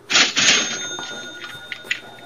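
Cash-register "cha-ching" sound effect: a sudden clattering burst, then a bell ringing on for about two seconds.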